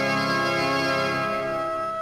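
Newly built Casavant Frères pipe organ sounding a full held chord. Near the end the lower notes thin out while one note keeps sounding: a cipher, the sign of a stuck valve in one division of pipes.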